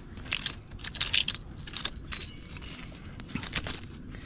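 Glass bottles and debris clinking and rattling as they are moved by hand, in a few quick clusters of sharp clinks, the busiest in the first second or so.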